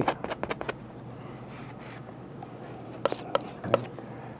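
Palette knife scraping across the wet oil paint on the canvas in a quick run of short strokes, cutting a clean edge along the bottom of the painted barn. It is followed by a quieter stretch and a few sharp knife clicks and scrapes about three seconds in.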